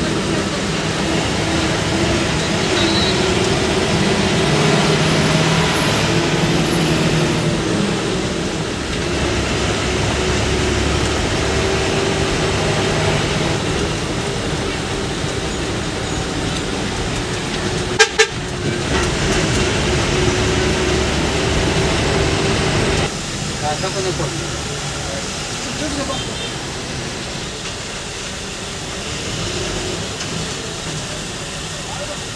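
Inside a coach driving at night: steady engine and road noise with horn toots. There is a sharp double click about halfway through.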